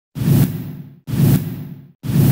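Whoosh sound effects from a TV news channel's logo ident, each with a low boom: two identical sweeps about a second apart, each starting suddenly and fading over nearly a second, with a third beginning at the very end.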